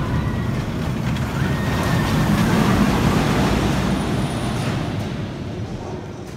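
Inverted steel roller coaster train rumbling along the track overhead, swelling about two to three seconds in and then fading as it moves away.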